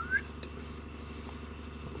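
A short rising squeak of rubber as the unit is pushed into a bicycle inner tube, ending a fifth of a second in, followed by a faint low steady hum.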